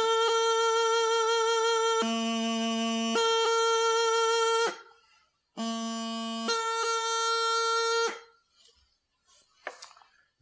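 Bagpipe practice chanter playing the double high A movement: held notes broken by quick grace-note blips, made by brushing the top-hand thumb down over the high A hole on the back of the chanter. It is played in two phrases, the second one shorter, and stops about eight seconds in.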